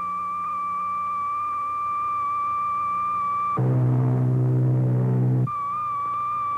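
Steady high-pitched radio tone signal from a bomber on a simulated bomb run, where the tone stopping marks bomb release. About three and a half seconds in, the tone gives way to a louder, lower buzz for about two seconds, then the high tone comes back.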